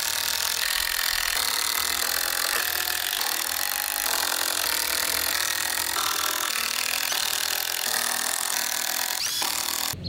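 Cordless drill driving 3-inch screws into pine 2x4 framing, a steady dense noise that stops abruptly near the end.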